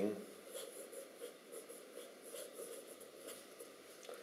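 Parker Vector fountain pen's everyday (non-flexible) nib scratching faintly across paper in a run of short writing strokes.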